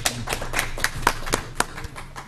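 Brief applause from a small group of people: irregular hand claps that thin out near the end.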